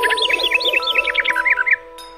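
A quick run of about a dozen high, bird-like chirps, roughly six a second, over a held music chord. The chirps stop shortly before the end.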